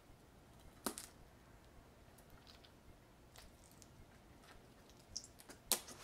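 Faint mouth sounds of a first bite into a kumquat and its chewing: a sharp click about a second in, scattered small wet ticks, and another sharp click near the end.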